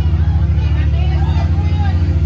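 Loud, sustained low drone from the band's amplified instruments, fluttering rapidly and holding steady: the band sounding a held opening drone before the song kicks in.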